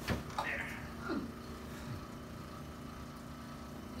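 A single sharp crack right at the start as a chiropractic adjustment releases a joint in the patient's hip and pelvis, followed by a steady low room hum.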